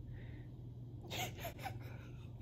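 A woman's stifled laughter: a quick run of four or five short, breathy gasps about a second in, faint against a low steady hum.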